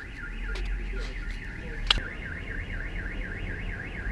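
Car alarm siren warbling rapidly up and down, several sweeps a second, over a low rumble, with a single sharp click about two seconds in.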